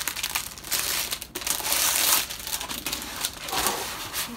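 Thin clear plastic wrapping crinkling and crackling as it is pulled off a rolled diamond-painting canvas. It is an irregular, continuous rustle, loudest about halfway through.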